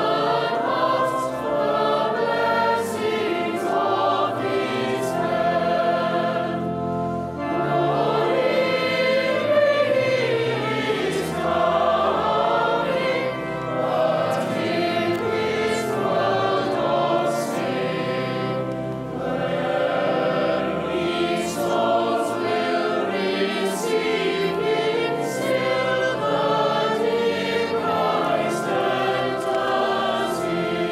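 A cathedral choir of children's and adult voices singing a Christmas carol, accompanied by a pipe organ whose long low notes are held under the voices.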